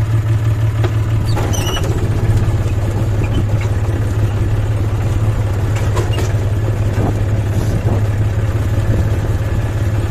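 Tractor diesel engine running at a steady, even speed, heard from the driver's seat as the tractor moves off, with a few faint clicks.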